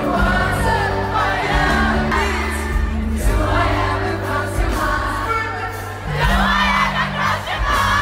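Live pop-rock band playing loudly in an arena, with electric guitar, bass and drums, singing voices, and the crowd singing along.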